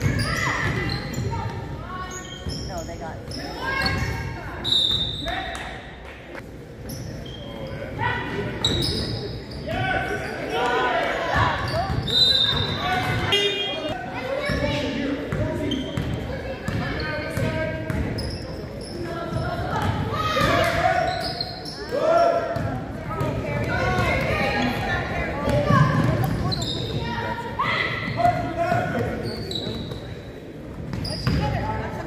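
A basketball being dribbled on a hardwood gym floor during play, with repeated bounces, among players' and spectators' voices that echo in the large gym.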